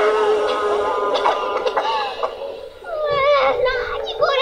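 Audio of the anime episode playing back: high-pitched character voices speaking Japanese with bending, excited pitch over a held musical note in the background score.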